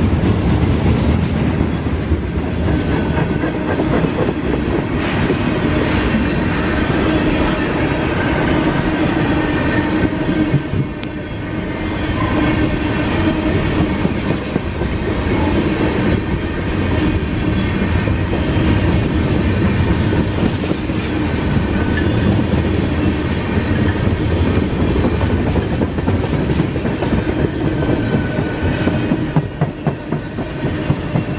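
Freight cars (gondolas, tank cars and a covered hopper) rolling past at close range: a steady rumble with rapid clicking of steel wheels over the rail joints, easing slightly for a moment about eleven seconds in.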